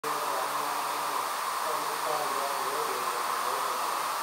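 A steady buzzing hum with faint background voices.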